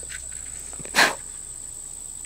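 An old deer call blown once: a single short, sharp note about a second in, which still works. A steady high-pitched insect drone runs underneath.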